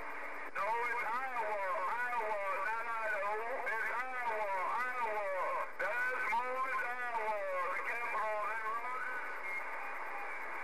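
A voice received over a Galaxy CB radio, starting about half a second in and stopping near the end. It sounds thin and narrow over a steady hiss of static, and the words are hard to make out.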